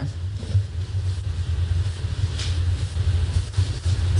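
A steady low rumble in the room's audio, with a brief soft rustle about two and a half seconds in.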